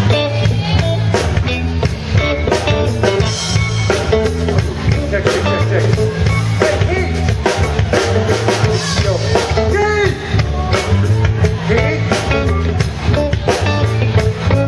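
Live band playing a reggae groove: drum kit keeping a steady beat over bass, electric guitar and keyboard.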